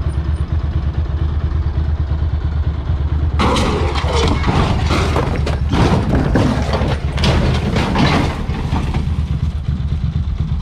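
Motorcycle engine running with a low, steady rumble. About three and a half seconds in, a loud, rough burst of noise with scraping and knocks begins and lasts about five seconds as the rider bails and the motorcycle goes down onto the road.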